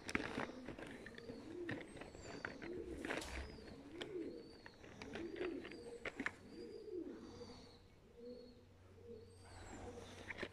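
Pigeons cooing, a low rise-and-fall call repeated about once a second, dying away over the last couple of seconds. Faint higher chirps and a few sharp clicks sound alongside.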